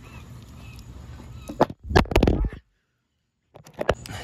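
Camera being picked up and handled: a couple of sharp knocks, then loud rubbing on the microphone for about a second, broken off by a gap of dead silence and two more clicks near the end.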